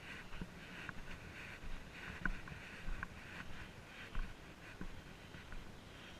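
Footsteps crunching on a dirt forest trail, a step every half-second to a second, over a steady rush of river water.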